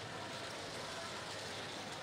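Faint, steady background noise of a large indoor arena during play, an even wash of sound with no single event standing out.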